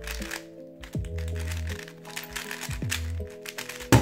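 Background music with held notes and a bass line, over quick clicking of a 3x3 speedcube being turned fast during a timed solve. Near the end there is one sharp, louder knock as the solve is stopped on the timer.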